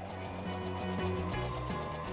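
A domestic sewing machine running steadily, stitching a zip to the seam allowance, under background music.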